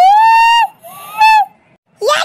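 High-pitched, sped-up cartoon voice giving a long held 'ooo' call, followed about a second later by a shorter rising call.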